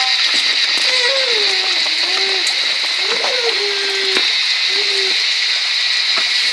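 A steady high hiss, with several low calls that slide up and down in pitch and two sharp knocks about three and four seconds in.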